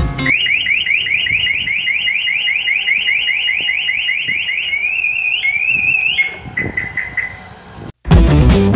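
Maruti Suzuki Baleno's factory anti-theft siren, triggered by its shock sensor, sounding. It starts with a fast run of short rising chirps, about six a second, then changes to slower rising whoops and short beeps, which fade out near the end.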